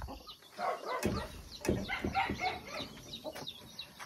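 Chickens making short, scattered clucks and chirps around the coop, with a couple of sharp knocks about a second and a second and a half in.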